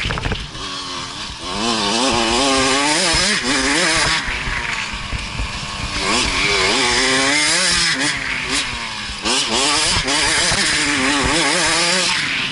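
KTM 65SX's 65cc two-stroke single-cylinder engine revving hard under way, heard from the rider's helmet. Its pitch climbs and falls in repeated sweeps, with brief throttle-offs about a second in and near nine seconds.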